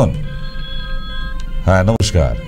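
Telephone ringing tone coming over the studio phone line: a steady tone of several pitches held for about a second and a half, then a man's voice briefly near the end.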